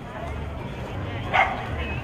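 A single short dog bark about halfway through, over the steady murmur of a crowd talking.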